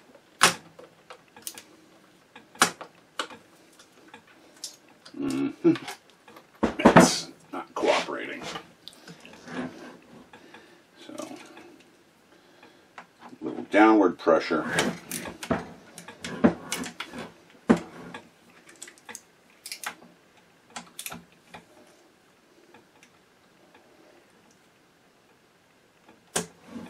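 Ratchet handle on an extension and bit working a stuck screw in the bottom mechanism of a 1914 Singer 127 sewing machine: irregular metallic clicks and knocks, thinning out near the end.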